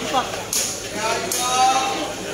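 Talking voices at the court between rallies, with two sharp knocks, about half a second and a second and a quarter in.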